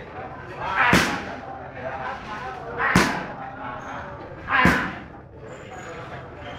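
Three sharp, loud slaps of Muay Thai strikes landing, spaced about two seconds apart, with voices murmuring between them.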